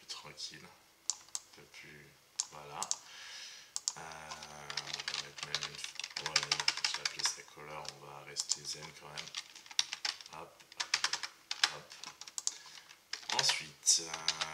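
Computer keyboard typing: a run of quick, irregular key clicks, denser in the second half. A low, steady pitched sound runs under much of it.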